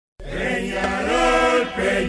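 Voices chanting a slow melody together, the notes held long and sliding between pitches, starting a moment in.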